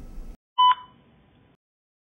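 A single short electronic beep about half a second in, a clear steady tone that fades quickly.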